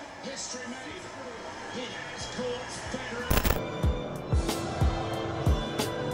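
A football broadcast playing through a TV speaker: faint commentary and crowd at first, then about three seconds in a crash of cymbals starts band music with a heavy drum beat about twice a second, as the national anthems begin at the stadium.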